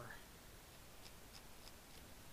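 Near silence: room tone, with three faint, short clicks about a third of a second apart, starting about a second in, from a computer mouse being used to move around a 3D viewport.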